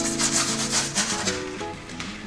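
Soft pastel rubbed across sanded pastel paper in a quick run of strokes, mostly in the first second or so, over background music.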